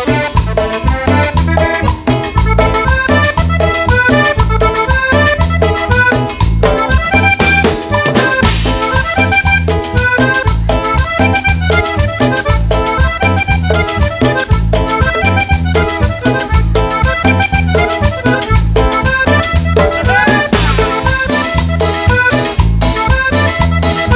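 Live band playing an instrumental Latin dance tune led by a diatonic button accordion, over drum kit, bass guitar and electric guitar, with a steady beat.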